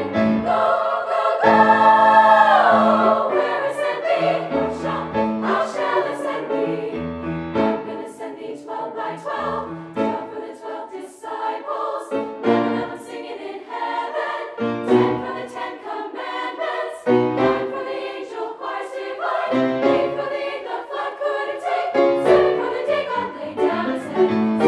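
Women's choir singing a gospel spiritual in rhythmic, shifting chords, with a loud held chord about two seconds in that slides down at its end.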